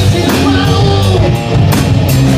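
Live rock band playing loud: electric guitars, bass guitar and drum kit together, with drum hits near the end.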